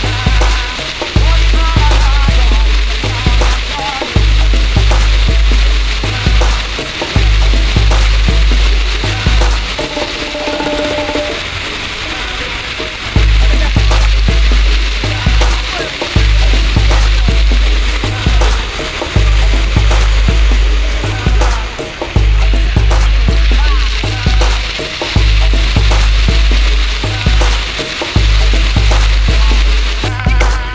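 Fountain jets splashing down into the basin with a steady hiss, under music with a heavy repeating bass line. The bass drops out for a few seconds about a third of the way in.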